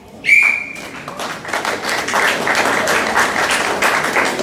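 A referee's whistle gives one short, shrill blast, signalling the judges' flag decision in a karate kata bout. A second or so later, scattered clapping and crowd noise begin and carry on.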